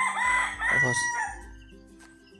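A rooster crowing: one long, loud call that ends about a second and a half in.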